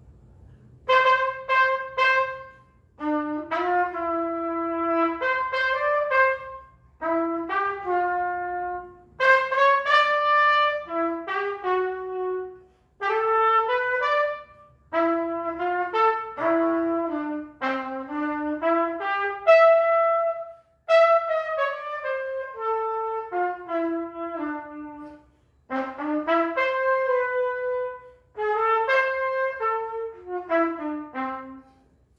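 Solo trumpet, unaccompanied, playing a melody one note at a time in short phrases with brief pauses between them.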